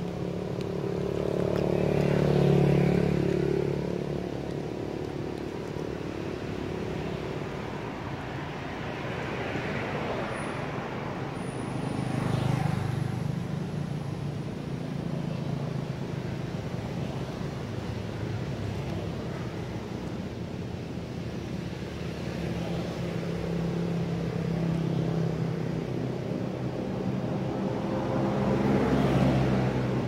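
Road traffic: several motor vehicles pass one after another, each engine note swelling and fading over a few seconds, over a steady background hum.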